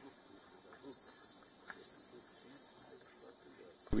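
Golden lion tamarin calling: a quick series of high-pitched, falling whistles, several a second, that grow fainter and stop about three seconds in.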